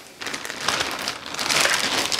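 Plastic packaging bag crinkling and rustling as a backpack inside it is handled, the crackling growing louder about half a second in.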